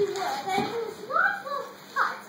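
Children's voices speaking, with high, gliding pitch.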